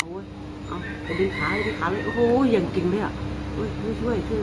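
Voices, with a drawn-out pitched call between about one and three seconds in, over a steady low hum.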